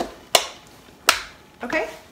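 The plastic lid and latch of a Red Copper 5 Minute Chef cooker clicking shut: three sharp clicks over about a second.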